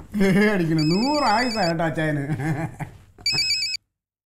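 Mobile phone ringing: a trilling electronic ringtone in short repeated bursts, about a second in and again near the end, where it stops abruptly.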